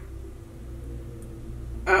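A pause in the conversation: a low steady hum with a few faint steady tones and no speech.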